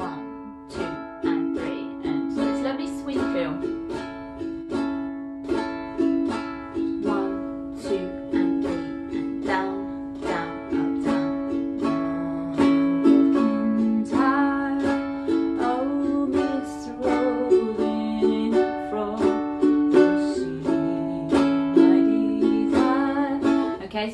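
Ukulele strummed in a steady three-beat rhythm, changing between a few chords.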